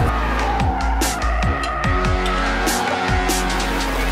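Background music with a steady beat, over the tires of a BMW M440i xDrive squealing as the car slides through a corner in oversteer.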